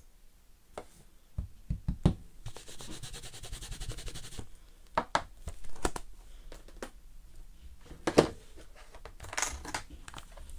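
Rubber stamps being cleaned and handled at a craft desk: a couple of seconds of scrubbing about two and a half seconds in, among scattered clicks and knocks of stamps and clear blocks being set down, the sharpest a little after eight seconds.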